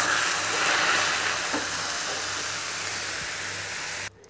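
Cold milk hitting hot melted sugar caramel in a pan, sizzling and hissing as it foams and boils up. The hiss is loudest about a second in and slowly eases off.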